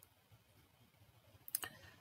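A few short, faint clicks of a computer mouse about a second and a half in, as a document is scrolled, against near silence.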